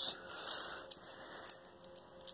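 Ballpoint pen scratching on graph paper as lines are drawn. It is loudest in the first half second, followed by a few faint clicks.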